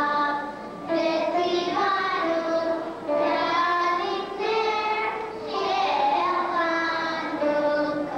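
Group of children singing a Hanukkah song together: a melody of held notes stepping up and down, in phrases of about two seconds with short breaks between.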